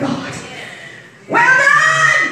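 A voice trails off. A little over a second in, a voice rises into a drawn-out, high-pitched cry held for under a second.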